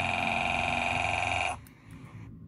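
Telephone ringing sound effect: a steady trilling electronic ring that cuts off suddenly about a second and a half in.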